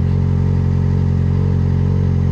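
Yamaha XJ6's 600 cc inline-four engine idling steadily.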